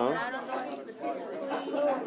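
Speech only: a short 'huh' at the start, then soft talking that the recogniser did not write down.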